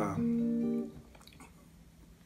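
A guitar chord of several notes ringing briefly, held for under a second and dying away about a second in, just after a spoken word ends.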